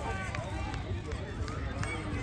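Distant, scattered voices of players and spectators calling out across an outdoor soccer pitch, over a steady low rumble, with a few light knocks.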